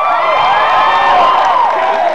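Audience cheering, many high voices shouting and whooping at once, thinning out near the end.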